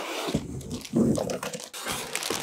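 Plastic bag rustling and cardboard scraping as a laptop in its plastic sleeve is slid out of its shipping box, in irregular bursts of handling noise.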